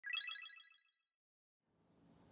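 A short, bright electronic chime: a rapid run of bell-like notes lasting under a second.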